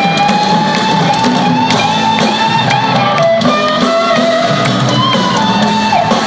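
A live rock band plays in a large arena. A lead electric guitar holds a long, slightly bending note, then plays further melody notes over drums and the rest of the band.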